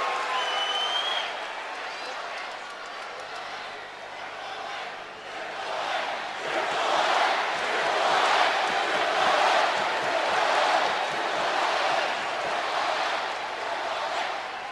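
Arena crowd cheering, a pop for a wrestler's entrance: the noise swells about six seconds in and holds loud before easing near the end.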